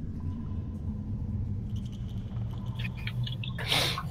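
Steady low background hum on an online voice-chat line, with a few faint ticks in the middle and a short burst of noise shortly before the end.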